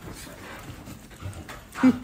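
A dog's faint breathing and movement. Near the end a person suddenly bursts out laughing.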